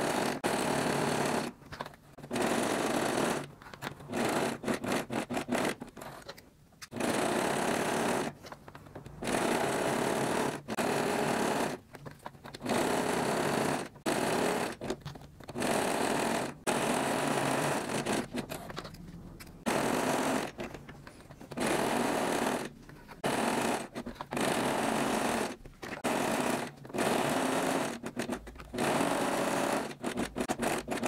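Simple household electric sewing machine stitching a three-step (dotted) zigzag through lycra and elastic. It runs in short spurts of a second or two, stopping and starting many times as the fabric is repositioned along the curve.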